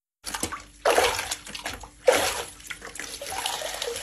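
Water sloshing and splashing in a plastic bucket as a roller sponge mop is dunked and wrung out, in several louder surges with wet swishing between.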